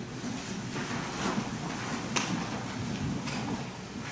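Low room noise with faint rustling and shuffling movement, and one sharp click about two seconds in.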